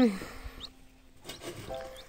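A brief falling voice sound right at the start, then a newly hatched Muscovy duckling giving a single faint high peep about half a second in, with a few light clicks of the bowl and cloth being handled.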